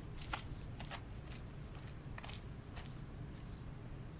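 Footsteps on asphalt, light ticks about two a second that stop after about three seconds, over a low steady rumble of wind on the microphone.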